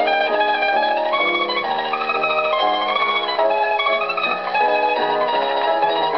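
Solo mandolin playing a melody of changing notes at an even loudness, from an old record played back on an EMG gramophone.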